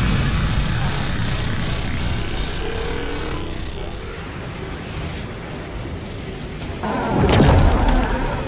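Cartoon sound effects of an atomic-breath energy beam firing, a sustained rushing blast that slowly fades, then a loud explosion boom about seven seconds in, with music underneath.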